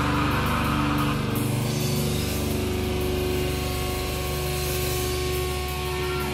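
A live metal band's full-band playing breaks off about a second in. Amplified electric guitar and bass are then left ringing in a steady, sustained drone with no drumming.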